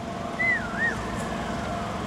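A single high whistling tone that wavers down and up twice, then slides slowly lower, over a steady low hum of background noise.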